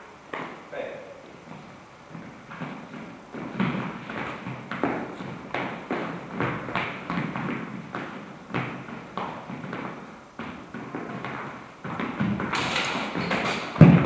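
Fencers' feet stamping and shuffling on a hard floor during a sword bout: a steady run of thuds and taps. It grows busier and louder about twelve seconds in, with clatter and a sharp thump at the very end.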